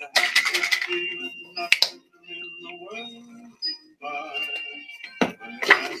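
Background music, with a short burst of noise at the start and a few sharp clicks of plastic paint bottles and cups being handled.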